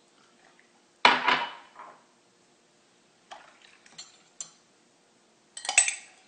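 A metal spoon knocking and clinking against a glass of water while the cleanser is stirred in: one louder knock with a short ring about a second in, a few light taps in the middle, and a quick run of clinks near the end.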